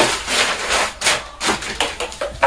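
Clear plastic wrapping rustling and crinkling in short, irregular crackles as a stand-up paddle-board hand pump is pulled out of it and handled.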